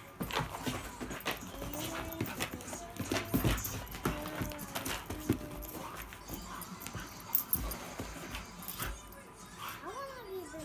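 A dog making a string of short, pitched vocal sounds as it play-wrestles with a cat, amid scuffling and knocks on the carpet; a sharp knock about seven seconds in is the loudest sound.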